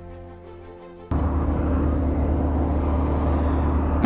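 Background music, then about a second in a sudden cut to a Columbia 400's Continental TSIO-550-C turbocharged six-cylinder engine and three-blade propeller running steadily and loudly with a deep drone as the airplane taxis.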